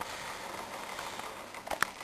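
Handling noise from a plastic blister pack being moved on a tabletop: a low steady hiss with two or three sharp clicks near the end.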